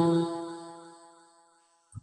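Pali verse chanting: the last syllable of a verse is held on one note and fades away over about a second, leaving silence. A brief faint sound comes just before the next verse begins.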